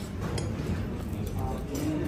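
Café room noise with faint voices, and a few light clinks of a metal spoon against a ceramic porridge bowl as a child stirs.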